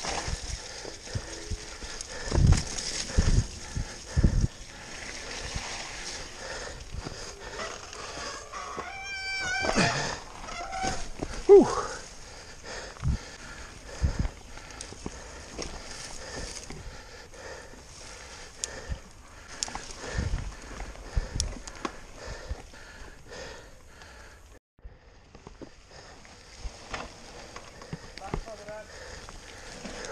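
Mountain bike descending a rough, rooty dirt trail at speed: tyres rolling on mud, with irregular knocks and rattles from the chain and frame over bumps, and wind noise on the camera microphone.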